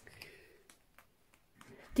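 A quiet pause with faint room tone and a few soft, short clicks.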